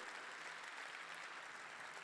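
Faint applause from a concert hall audience, a steady soft patter of clapping.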